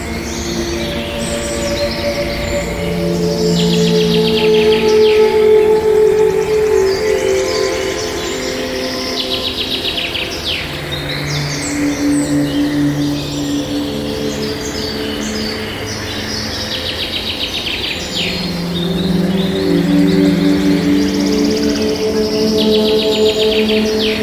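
Calm music with slow, held notes, layered with birdsong: quick high chirping trills that come back every three to four seconds.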